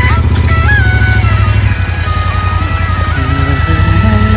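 Music with a sustained melody over the steady low running of a Royal Enfield Interceptor 650 parallel-twin engine, ridden at low speed.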